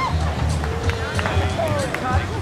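Music playing with a pulsing bass, mixed with people's voices calling out unintelligibly and a few sharp clicks.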